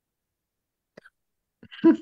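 Near silence on a video call, a brief faint click about a second in, then a man starts laughing near the end in short repeated bursts.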